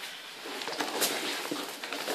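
Grapplers' bodies and clothing scuffing and shifting on foam mats, with a soft knock about a second in.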